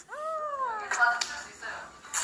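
A high voice held in one drawn-out call that falls slowly in pitch, like a sing-song 'good job~', followed by a brief bit of speech.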